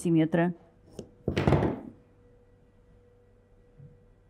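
A click, then one short rasp of dressmaking scissors cutting through paper pattern.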